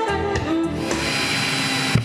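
Background music, then about halfway through the steady whir of a power drill driving screws.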